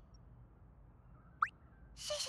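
Quiet background with one very short chirp that sweeps sharply upward in pitch, about one and a half seconds in.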